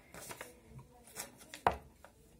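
A glue stick rubbed on the back of a paper cutout, with light paper handling and a few small clicks, and one sharp tap about three-quarters of the way through.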